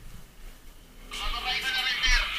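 A person's high-pitched laughter breaking out about a second in, over a short spoken word.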